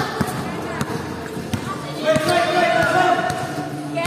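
Basketball being dribbled on a hard court, a string of sharp bounces about every half second to second, with voices over it in the second half.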